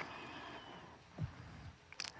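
Faint rustling and handling of a Bible's pages as it is leafed to a passage, with a click at the start and a soft thump about a second in.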